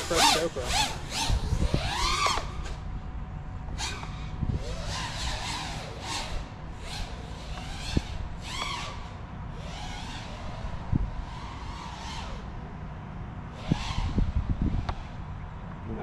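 FPV freestyle quadcopter's brushless motors and propellers whining, the pitch sweeping up and down over and over as the throttle is worked.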